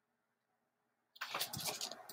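Near silence, then about a second in a hardcover picture book being handled and turned over, its paper pages and cover rustling and scraping against the hands.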